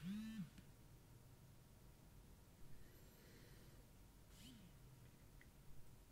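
Near silence with two brief, faint pitched buzzes, one right at the start and a weaker one about four and a half seconds in, each rising and falling in pitch: smartphone vibration motors pulsing as the phones power on.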